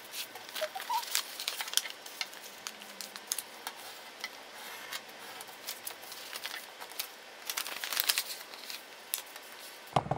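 A sheet of paper being folded and creased by hand for an origami crane: irregular rustling and crinkling with short, sharp crackles as the folds are pressed, busiest near the end.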